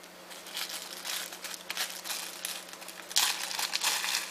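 Clear plastic packaging bag crinkling as it is handled, getting louder about three seconds in.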